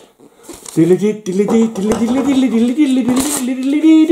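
A man humming, one unbroken low-pitched tune that starts about a second in and drifts slowly up and down, over the rustle of a paper-wrapped, taped package being handled, with a brief crisp rustle near the end.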